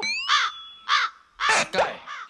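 Crow cawing sound effect, four short harsh caws a little apart: the comic cue for an awkward silence.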